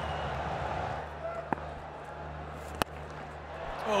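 Steady stadium crowd noise, with a single sharp crack of a cricket bat striking the ball a little under three seconds in, and a fainter click earlier.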